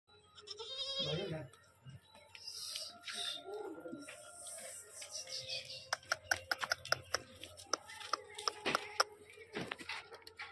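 A Sirohi goat bleats once about a second in, a short wavering call. Later comes a run of sharp clicks.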